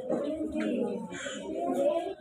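A person's low, indistinct voice talking or murmuring continuously, with no clear words.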